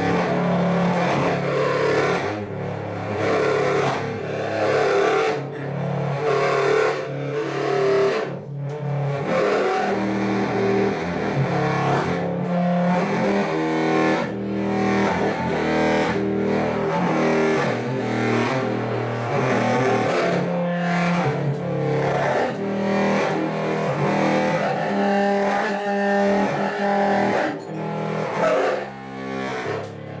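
Large silver low-register saxophone played solo in free improvisation: a continuous run of low notes that shift in pitch every second or so, with a few short breaks in the sound.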